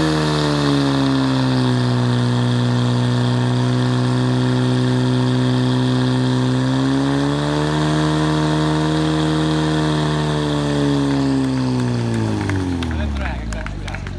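A portable fire pump's engine running hard at high revs, driving water through the hoses to the spraying nozzles. Its pitch rises a little about seven seconds in and falls away near the end as the revs drop.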